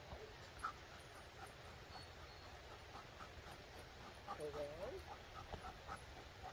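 A dog whining: a short, wavering whine about four seconds in, with faint short squeaks scattered through the rest.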